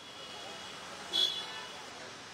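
Street traffic noise from the reporter's live microphone, with one short high-pitched toot about a second in.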